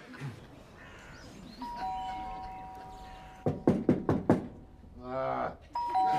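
Electronic two-tone doorbell ringing, a higher and a lower note held together for under two seconds, followed by a run of loud knocks on the front door and a short groan; the bell rings again near the end.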